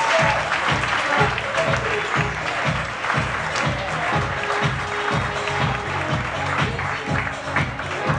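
Audience applauding over music with a steady beat.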